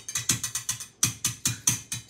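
Wire whisk clicking against a stainless steel bowl of soapy water, a quick even run of about six or seven metallic clicks a second with a brief break near the middle.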